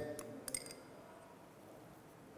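A single light click of a spoon against a dish about half a second in, then faint room tone while seasoning is measured into a bowl.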